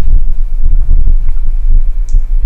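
Loud, low, irregular rumble of microphone handling noise as the camera is moved about.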